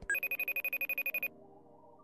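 A rapid trilling electronic ring, like a telephone ringing, lasting about a second before it cuts off, over soft background music.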